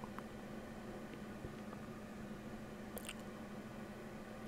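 Faint room tone on a workbench: a steady low hum with a few soft, brief clicks.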